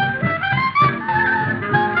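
Boogie-woogie dance-band music from a 1950s recording: clarinet and brass play over a steady low beat of about four pulses a second. The sound is dull and narrow, with no top end.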